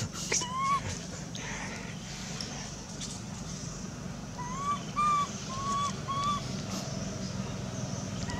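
Short, clear whistled calls, each rising then falling in pitch: one early on, then a run of four evenly spaced calls about halfway through, over a steady low background hum.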